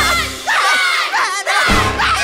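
A group of children shouting and cheering together over stage-musical music, with a low bass hit at the start and another near the end.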